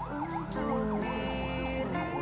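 A siren yelping, its pitch swooping up and down about four times a second, over background music with held notes.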